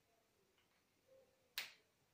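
Near silence with a single sharp click about one and a half seconds in.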